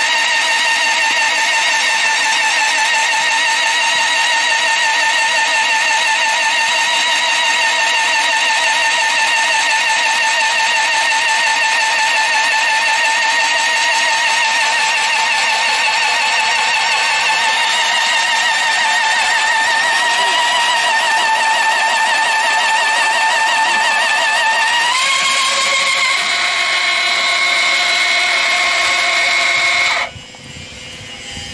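Battery-powered rail drilling machine (LZK-31) drilling through the web of a steel rail: a steady, loud motor whine. About 25 seconds in, its pitch steps up and stays higher.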